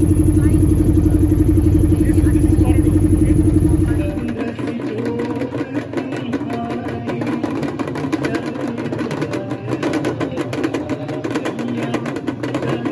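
A boat's motor running with a steady drone for about four seconds, then an abrupt change to a crowd's voices over fast, continuous percussion.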